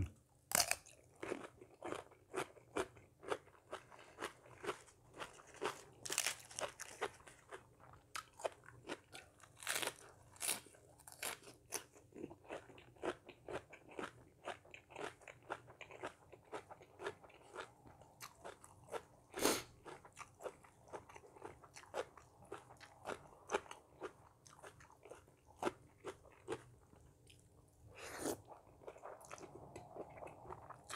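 Close-up crunching and chewing of raw cucumber, many crisp crunches in an uneven rhythm. Near the end, a noisier stretch as noodles are slurped in.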